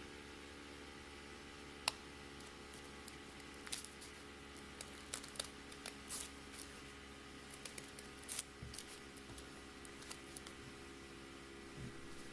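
Small scissors snipping through several layers of accordion-folded paper in short, irregular clips, over a faint steady hum.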